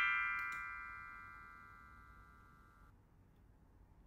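Bright chime sound effect ringing out with several bell-like tones and fading away steadily, cut off short about three seconds in, then near silence.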